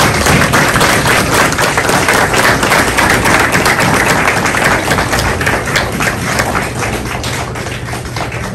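A room of people applauding: many hands clapping in a loud, dense patter that eases off slightly toward the end.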